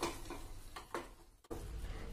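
Faint stirring of thick chutney with a wooden spatula in a metal kadai, the sound dropping out to silence for a moment a little past a second in.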